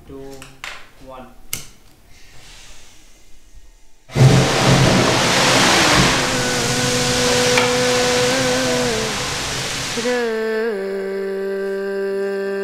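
Nitrous-oxide hybrid rocket motor hot-firing on a static test stand. A loud, even rushing noise starts suddenly about four seconds in, runs about six seconds and cuts off abruptly at the end of the burn.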